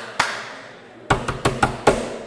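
A run of sharp knocks close to the microphone: one just after the start, then a quick, uneven cluster of about six about a second in.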